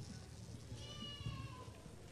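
A young child in the congregation lets out a short, high-pitched whine lasting about a second and falling slightly in pitch, over the low murmur of a seated crowd.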